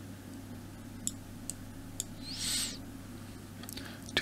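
A steady low hum with a few faint, isolated computer mouse clicks and one short soft hiss about two and a half seconds in.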